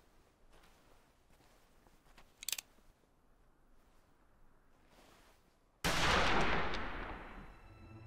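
A single gunshot about six seconds in, with a long echoing tail that dies away over about two seconds.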